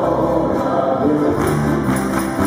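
Live Chilean folk music: group singing over accordion and guitar. Sharp hand claps join about one and a half seconds in.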